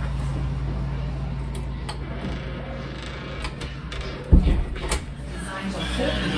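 A door bumps shut with one loud thump about four seconds in, after a few light clicks and knocks. Background music comes in near the end.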